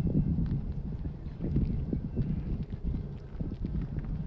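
Wind buffeting the microphone: irregular low rumbling and thumping gusts.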